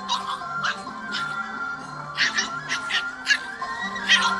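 Background music with steady held notes, over which dogs give several short, sharp yelps and barks while play-fighting.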